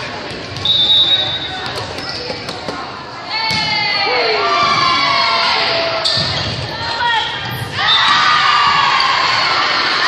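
Volleyball rally on a hardwood gym floor, echoing in a large hall: short high shoe squeaks and sharp ball hits. About three seconds in, many voices begin shouting and cheering, with another loud surge near the end as the point is won.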